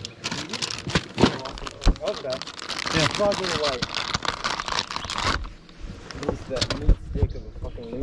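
Crinkling of a plastic soft-bait package (6th Sense Stroker Craws) handled in the hands, a dense crackle that cuts off suddenly about five seconds in, with a few dull thumps.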